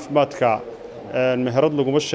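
A man speaking in short phrases, with brief pauses between them.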